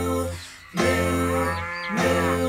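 A woman's voice singing a drawn-out cow "moo" as a children's-song animal sound, over guitar or ukulele accompaniment, in two long held notes with a short break about half a second in.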